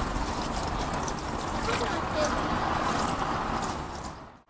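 Steady trickle of water running out through the cast-iron clawfoot tub's overflow, with faint voices under it.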